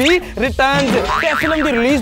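A man talking in an animated voice, with a springy, wobbling 'boing' sound effect in the second half.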